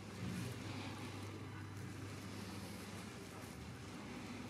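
A steady low hum under faint background noise.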